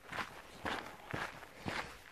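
Footsteps on a dirt footpath: four steps at an easy walking pace, about two a second.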